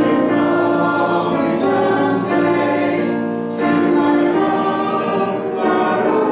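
A congregation singing a hymn together, with piano accompaniment, in slow, held notes.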